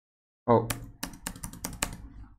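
Computer keyboard keys being pressed: six or seven quick, sharp clicks in a little over a second, following a short spoken 'oh'.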